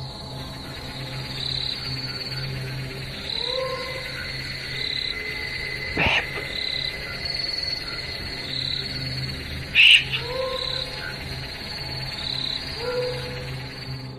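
Frogs and insects calling at night: short high chirps repeating every second or so, a steady high tone, and a few rising calls. Sharp clicks come about six and ten seconds in, the second the loudest.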